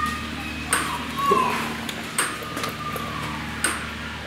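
A short, sharp, high-pitched ping repeating evenly about every second and a half, three times, over a background murmur of people's voices.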